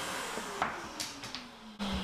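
Hegner scroll saw running down after being switched off, its hum slowly falling in pitch as the running noise fades. A few light clicks and knocks of the wooden workpiece as it is handled and lifted off the saw table.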